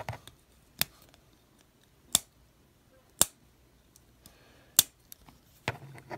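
Four sharp metallic clicks about a second apart, with fainter ticks near the end, as fingernails catch and slip on the closed spatula of a Steel Warrior doctor's pocketknife. The spatula has no nail nick and will not come open.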